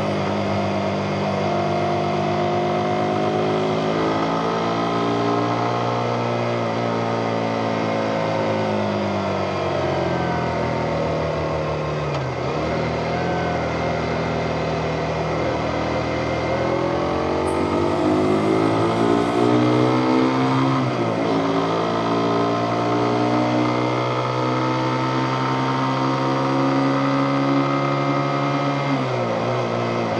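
Motorcycle engine running under way, its note falling and climbing again a few times.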